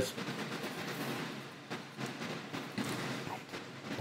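Faint steady background noise with a low hum and a few soft clicks between speech.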